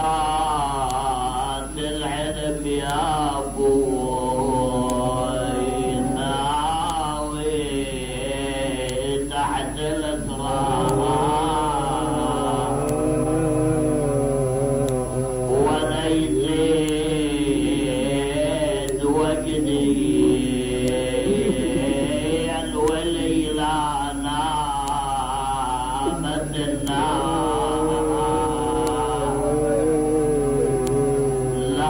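A man's voice chanting an Arabic mourning lament into a microphone, in long wavering held notes with short breaks between phrases. Beneath it is an old recording's steady low hum and a faint steady high whine.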